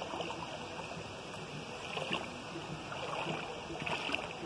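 Bare feet wading through a shallow stream: water sloshing and splashing around the steps, over the steady running of the stream.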